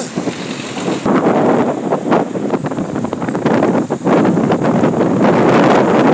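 Wind buffeting the phone's microphone in uneven gusts, a loud rushing noise.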